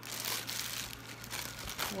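Clear plastic bag crinkling as it is pulled and crumpled by hand off a condenser microphone, in a rapid, uneven run of crackles.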